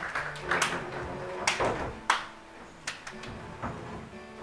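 Scattered knocks and bumps from people moving about a darkened stage, the sharpest about two seconds in, with faint music underneath.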